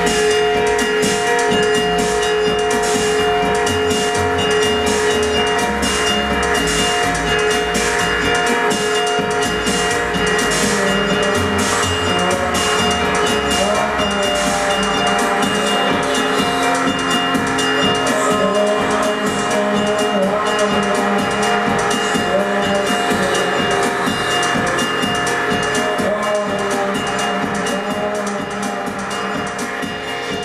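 Music: several held tones over a dense, fast, even pulsing texture, loud and continuous, easing slightly near the end.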